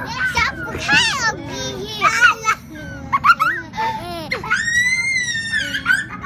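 Young girls' high voices in excited play: quick calls and squeals, then one long high squeal near the end.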